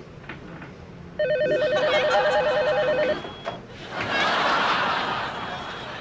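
Office desk telephone ringing once with a fast warbling electronic trill lasting about two seconds. It is followed by a soft rushing noise that swells and then fades.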